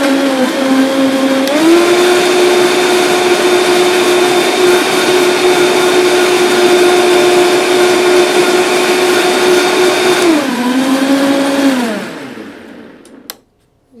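Vitamix blender motor blending a smoothie. It starts at low speed, steps up in pitch to a higher speed about a second and a half in, and runs steady for about nine seconds. It then steps back down and winds down to a stop, followed by a single click near the end.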